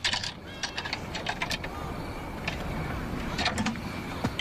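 Irregular clicks and rattles of buckles and hardware as a marching drum is strapped on.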